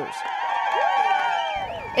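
Crowd of young fans cheering and screaming, many high voices at once with wavering pitch and a few swooping whoops.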